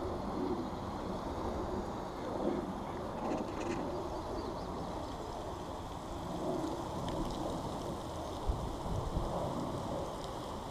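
Steady low rumble of wind on a body-worn camera's microphone, with a couple of short thumps near the end.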